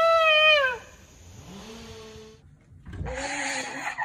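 A shofar blown by a child holds one steady, bright note that ends about three-quarters of a second in, its pitch sagging as the breath gives out. Fainter sounds follow, then a short, loud, breathy burst near the end.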